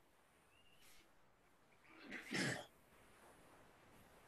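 A person makes one short throat-clearing noise about two seconds in, in an otherwise quiet pause.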